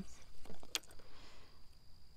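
A few faint clicks and light knocks of gear being handled on the easel's tray, with a faint steady high tone behind them.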